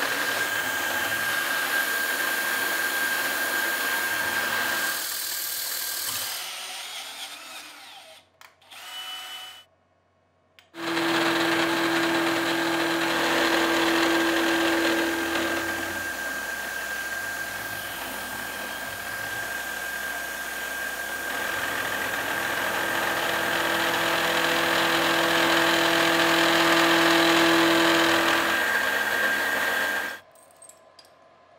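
Milling machine spindle running and an end mill cutting metal: a steady high whine over a hiss of cutting noise. The sound falls away for a few seconds about six seconds in, then comes back at about eleven seconds, with a lower steady tone added during two stretches of the cut, and stops abruptly at the end.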